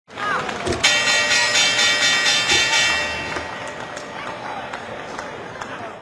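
Intro logo sting: a short swish, then about a second in a bright, shimmering chord with a bell-like ring. It holds for a couple of seconds, slowly fades, and cuts off suddenly at the end.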